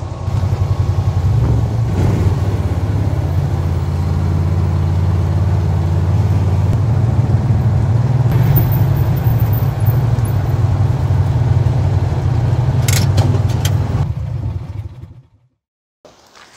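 John Deere Gator utility vehicle's engine running under throttle as it drives, a steady low drone with some rattling. It dies away about a second before the end.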